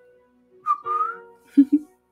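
A short whistled note, about half a second long, dipping and then rising in pitch, with soft sustained piano chords starting under it. Two brief low vocal sounds follow near the end.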